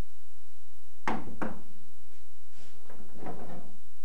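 Steel fuel-tank hold-down strap knocking against the Jeep's sheet-metal tub: two sharp knocks about a second in with a faint ringing after, then a longer clatter near three seconds.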